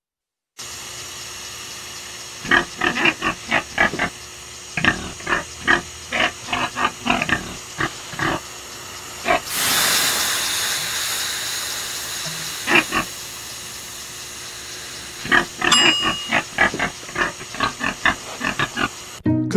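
A pig grunting in quick runs of short grunts, broken about halfway by a long hiss of steam that slowly fades, then more grunting near the end.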